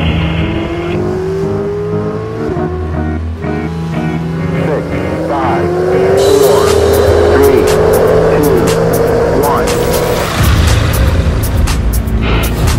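A racing car's engine accelerating hard, its pitch climbing in two pulls: a short one at the start, then a long rise from about three to ten seconds in. It is mixed with electronic music with a steady low beat.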